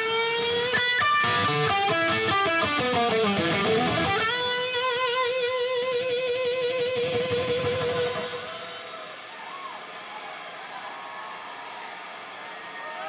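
Electric guitar playing lead with a live band behind it: a run of quick notes, then a bend up into one long held note with wide vibrato. The playing drops away sharply about eight seconds in.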